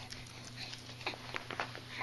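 A baby's quiet, breathy giggling: a handful of short huffs of breath spread through the moment.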